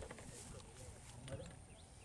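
Faint, indistinct voices of people talking, with a few small clicks and handling noises.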